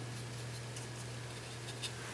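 Faint light scratching of a small paintbrush on the painted plastic bunny figure, over a steady low hum.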